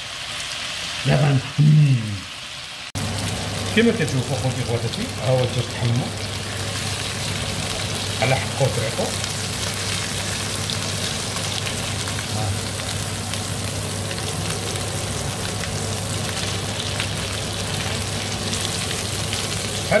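Marinated boneless chicken thighs frying in butter with a little oil in a non-stick pan, a steady sizzle.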